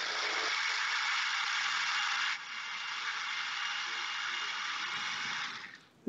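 A 900-watt Ninja Nutri-Blender Plus personal blender running, pressed down to blend soaked blanched almonds and water into almond milk. A steady whir that drops a little in level about two seconds in and stops just before the end.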